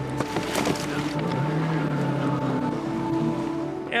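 Jet ski engines running, their steady note stepping up in pitch about a second and a half in, under a background music bed.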